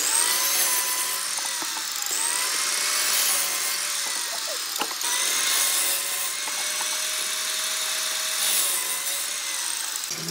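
Compound miter saw running with a steady high whine as its blade is pulled down through blocks of wood, the pitch sagging and recovering as each cut loads the motor.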